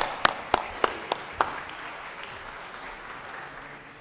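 Applause: one person's hand claps close to the microphone, loud and sharp at about three a second for the first second and a half, over the scattered clapping of the room, which fades away toward the end.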